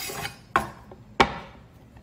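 Chef's knife cutting the end off a delicata squash on a wooden cutting board, with two sharp knocks on the board about half a second and just over a second in, the second the louder.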